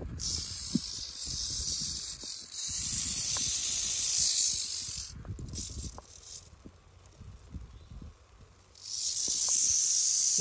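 Timber rattlesnake rattling its tail: a steady high buzz for about five seconds, a brief burst, a pause of about three seconds, then the buzz starts again near the end. Low knocks and rumble sit underneath.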